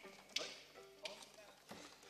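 A quiet pause with a few sharp clicks and taps and faint short notes from a folk orchestra's instruments and stands.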